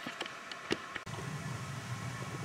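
A few faint, light clicks of a steel bicycle brake cable being handled at the brake lever, then a steady low hum from about a second in.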